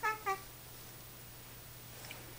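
A baby gives two quick, high-pitched coos in a row at the very start, each dipping slightly in pitch.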